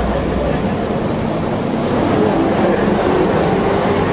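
A man's voice speaking indistinctly into a handheld microphone, over a steady low rumbling noise that is as loud as the voice.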